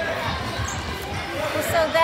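Basketball bouncing on a hardwood gym floor among scattered spectators' voices, echoing in a large hall. Just before the end there is a brief, loud, high-pitched wavering sound.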